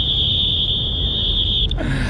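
Match timer's electronic buzzer sounding one long, steady high-pitched beep that cuts off near the end: the full-time signal ending the game.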